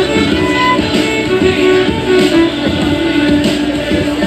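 Violin played live, a melody of held, bowed notes, over accompanying music with a plucked or strummed string part.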